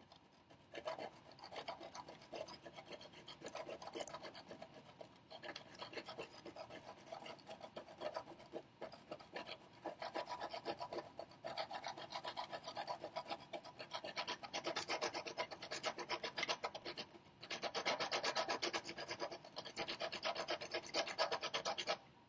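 Soldering iron tip scrubbed rapidly back and forth on sandpaper to clean it: a dry rasping in quick strokes, with a brief pause about three-quarters of the way through. It stops abruptly at the end.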